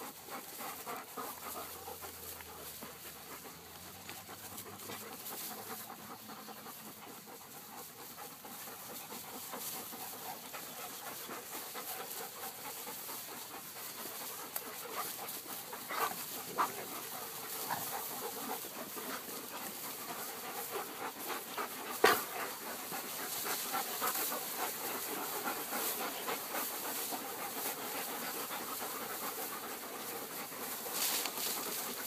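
Dogs panting as they run about close by, with rustling and small knocks, and one sharper knock a little past two-thirds of the way through.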